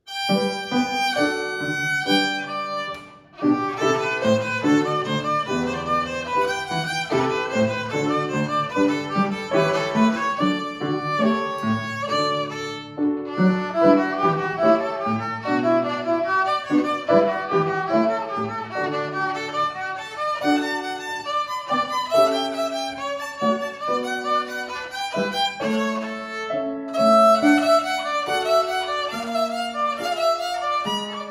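A violin playing a classical piece with upright piano accompaniment. The music starts abruptly, breaks off briefly about three seconds in, then carries on.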